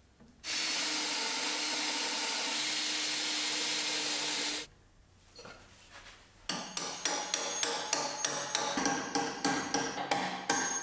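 Cordless drill with a long twist bit running steadily as it bores into a pine workbench leg for about four seconds, then stopping. Near the end a hammer strikes repeatedly, about four blows a second, each with a short metallic ring.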